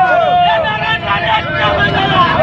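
Crowd of men shouting slogans together, many voices overlapping, over a steady low rumble.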